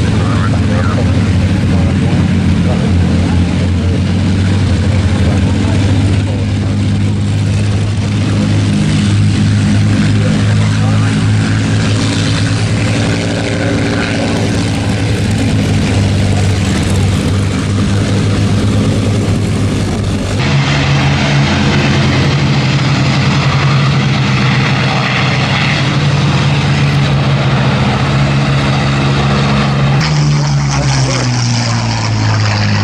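Piston aero engines of WWII propeller fighters running as they taxi, a steady, loud drone. The pitch of the drone shifts abruptly a little past two-thirds of the way through.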